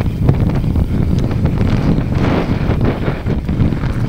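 Wind buffeting the camera microphone while a mountain bike rolls down a grassy track, over a steady low rumble from the tyres and a few short clicks and rattles from the bike.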